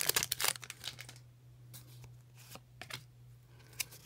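Foil Pokémon booster pack wrapper crinkling and tearing as it is opened and the cards are slid out, busiest in the first second, then a few faint clicks of cards being handled.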